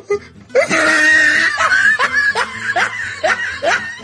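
A person laughing in a run of short bursts, about two a second.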